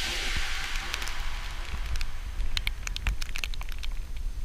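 Outdoor ambience at a snow camp: a steady low wind rumble on the microphone with scattered light crackles and ticks, mostly in the second half. The tail of background music fades out at the start.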